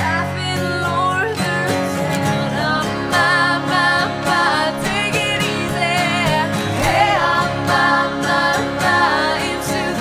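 Three acoustic guitars strummed together under a woman's lead singing, her held notes wavering in pitch.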